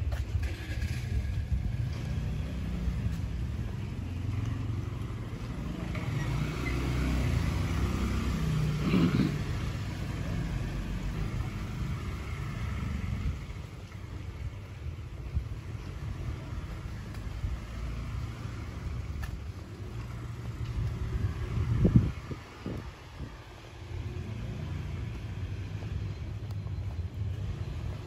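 Low rumble of motor traffic, louder between about six and ten seconds in, with one sharp thump a little past twenty seconds in.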